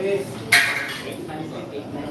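Pool balls knocking together once: a single sharp click with a short ringing tail about half a second in, over faint background talk.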